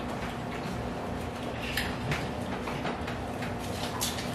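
Table sounds of people eating and drinking: a few small clicks and crinkles over a steady low hum.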